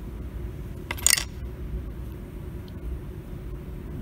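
A single brief metallic clink about a second in, as the small metal parts of a toggle switch are handled on a wooden tabletop during disassembly, over a steady low hum.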